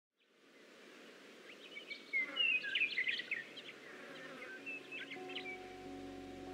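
Birds chirping over a soft background hiss that fades in. Near the end, soft sustained chords of a lofi music track come in under them.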